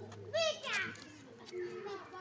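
A young child's short, high-pitched vocal sound about half a second in, followed by fainter low voice sounds.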